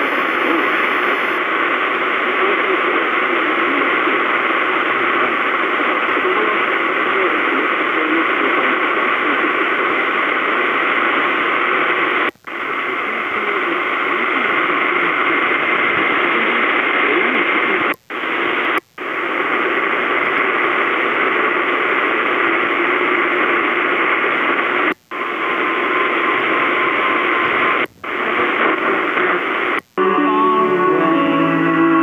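AM radio reception full of hiss and static, with faint speech from weak stations buried in it. The hiss is cut by five brief silent gaps as the receiver is stepped from one frequency to the next.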